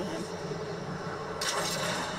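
Episode soundtrack of an aerial flight scene: a steady low rumbling, rushing drone, joined by a brighter hiss about one and a half seconds in.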